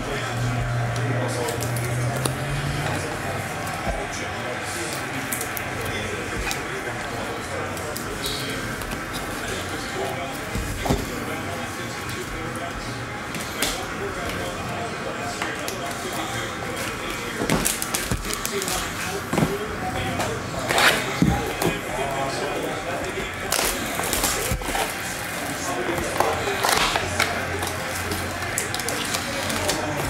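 Clear plastic card sleeves and top loaders being handled: soft crinkling with several short sharp clicks and crackles, the loudest clustered in the second half, over a steady background of indistinct voices.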